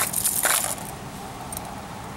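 Vintage fishing lures, some with metal bodies, and their treble hooks clinking and rattling against each other and the plastic tackle box as they are handled and set down, for the first second or so. After that only a faint steady background with a couple of light ticks.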